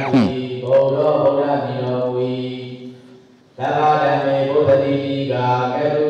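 A Buddhist monk's voice reciting Pali text from a book in a steady, chanted monotone. The recitation tails off into a short breath pause about three seconds in, then resumes.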